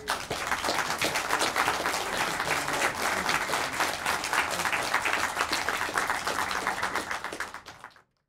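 Audience applauding: many hands clapping in a steady patter that starts suddenly, then dies away near the end and cuts off.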